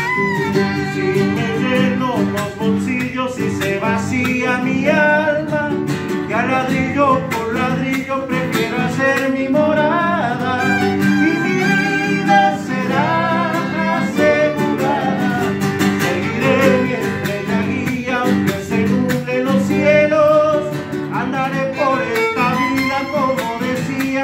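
A chacarera played live on acoustic guitars and a violin, with a man singing.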